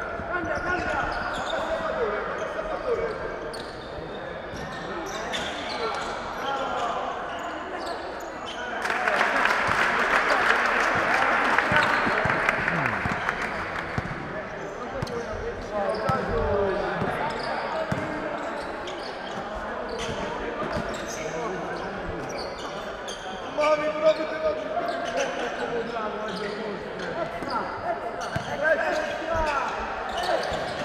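Live indoor basketball game: the ball bouncing on the court and sneakers squeaking, with players calling out and voices in the hall. A louder stretch of noise from the stands lasts about five seconds in the middle.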